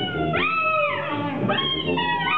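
Live jazz from trumpet, saxophone, tuba and drums, with high horn notes that swoop up and slide down about once a second, like wailing cries, over low held notes.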